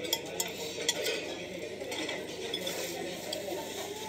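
Cutlery clinking and scraping against dishes while eating: a few sharp clinks in the first second, then lighter scrapes, over steady dining-room noise.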